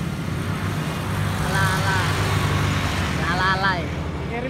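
A steady low motor hum under an even outdoor noise haze, with people's voices calling out twice, about one and a half and three and a half seconds in.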